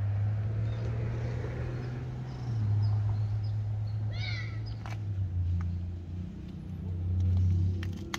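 Low steady hum of the Mercedes-Benz E250 CGI's 2.0 turbo engine idling, heard through the open rear door, its pitch stepping down slightly a few times. A brief run of high chirps comes about four seconds in.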